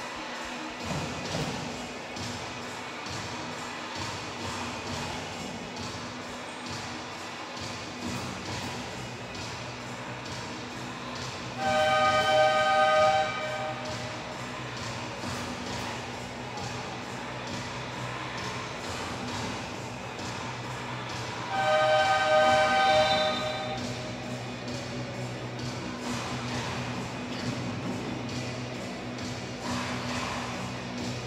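Arena music playing over a timeout, cut through twice by the basketball game horn: two flat, buzzing blasts of about a second and a half each, the first a little before halfway and the second about ten seconds later, the horns that mark the timeout running out and ending.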